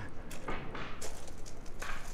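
Footsteps on crushed-rock gravel, several short crunching steps at an uneven pace.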